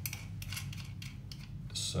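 Small metallic clicks of lock nuts being turned by hand on a toilet flush button's threaded push-rod fittings, locking the button adjustment in place. The clicks come at irregular moments, over a low steady hum.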